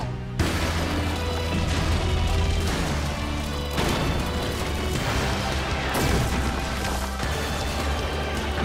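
Action-show soundtrack: dramatic music over rumbling crash and explosion effects. It starts with a sudden blast about half a second in, with further crashes around four and six seconds in.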